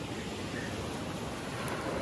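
Small waves washing up over a pebbly shingle beach: a steady hiss of surf.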